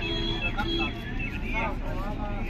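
Several people talking in the background over a low, steady rumble.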